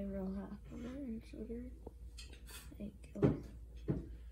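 A wooden skewer and hand knocking against ceramic plates while the skewer is pressed into granulated sugar, with a few sharp clacks in the second half.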